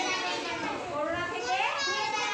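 Several young children's voices speaking at once, overlapping.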